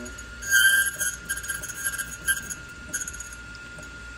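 Rytan RY456 key duplicating machine running with a steady high whine, with several short, high metallic clinks and scrapes from the cutter and key carriage while an angled-cut Medeco key is being cut. The loudest clink comes about half a second in.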